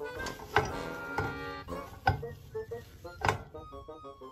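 Background music playing a light tune, with three sharp clicks about half a second, two seconds and three seconds in as a wire whip is handled in a stainless steel stand-mixer bowl.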